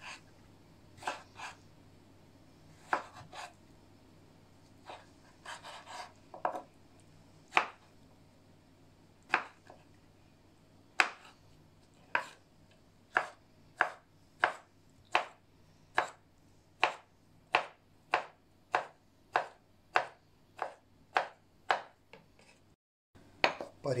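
A chef's knife cutting a pickled cucumber on a wooden cutting board, the blade knocking on the wood with each cut. The first cuts are slow and widely spaced, then from about halfway the knife dices in a steady run of about two knocks a second.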